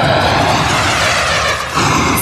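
A loud, steady rushing noise like a jet engine, from a TV ad's soundtrack, fading out shortly before the end.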